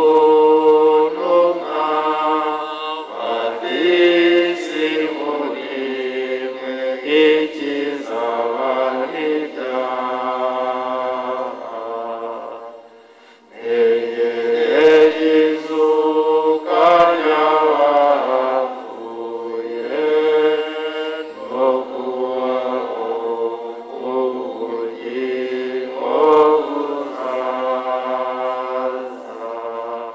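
A church choir singing a hymn in sustained phrases, breaking off briefly about halfway through before carrying on.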